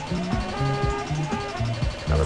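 Background music: a bass line moving in short notes under steady held tones.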